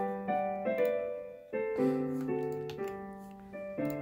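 Piano playing a slow, chordal arrangement, the playback of a transposed score from music-notation software. Each chord rings and fades before the next, with a louder chord coming in about two seconds in.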